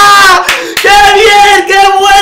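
A man yelling at the top of his voice in celebration of a football goal: one long held cry breaks off about half a second in, then a second drawn-out, wavering cry follows.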